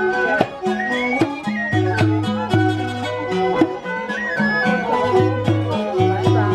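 Cambodian traditional ensemble playing live: a two-string bowed fiddle (tro) carries a sliding melody over a hammered dulcimer (khim) and low held notes, with regular struck beats.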